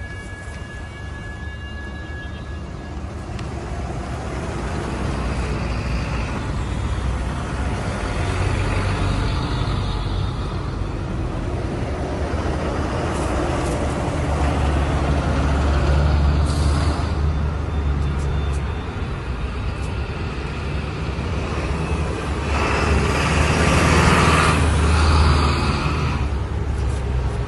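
Bus engines running as buses pull out and move off: a low, steady rumble that builds gradually. Near the end it swells louder and hissier as a bus passes close by.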